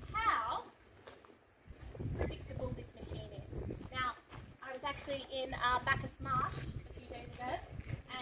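Indistinct voices of people talking close by, in short stretches with a brief lull about a second in.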